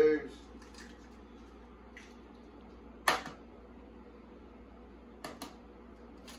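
A raw egg being cracked open into a paper bowl: one sharp crack of shell about three seconds in, with a couple of lighter clicks of shell near the end.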